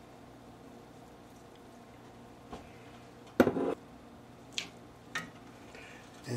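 A thick, wet enchilada filling of chicken, corn and chilies being stirred with a spatula in a cast iron skillet. It is mostly quiet, with a few brief sounds; the loudest comes about three and a half seconds in.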